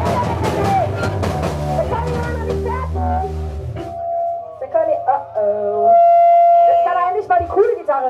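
Trash-hardcore punk band playing live, with loud drums and bass, until the music stops about halfway through. After that, voices talk between songs, and a loud, steady ringing tone is held for about a second and a half near the end.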